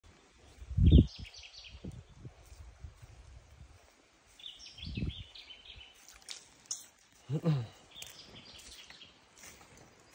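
Birdsong in two runs of quick chirps that step down in pitch, about a second in and again around five seconds, with scattered calls later. It sits over low thuds of steps in shallow water, the loudest about a second in. A short wordless vocal sound comes from the man about seven seconds in.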